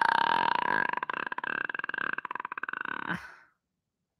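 A man's long, drawn-out burp that turns rough and rattling after about a second, then stops abruptly a little over three seconds in.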